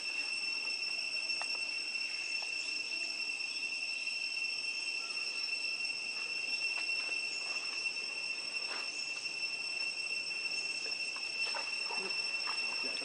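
Steady, unbroken high-pitched drone of insects, one constant tone with a fainter higher one above it, and a few faint clicks scattered through it.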